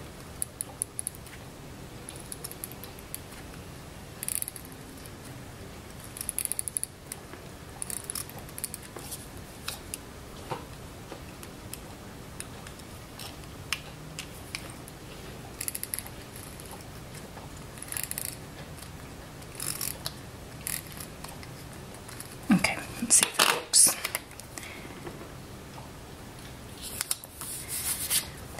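Short, faint rasping strokes of an adhesive tape runner being drawn over paper, mixed with paper and sticker-sheet handling, with a louder spell of rustling and scraping a little before the end.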